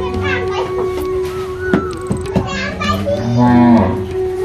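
Village ambience: children's voices and a farm animal's long low call near the end, over a steady held note.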